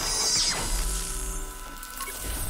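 Electronic logo sting made of sound effects. Downward whooshing sweeps come near the start, then a low hum runs under a bright, shimmering hiss.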